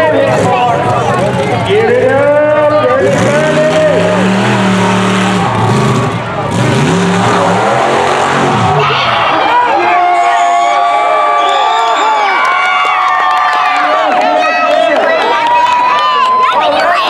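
A mud truck's engine revving hard in repeated rising and falling surges as the truck flips. It is followed by crowd cheering with a couple of held higher tones.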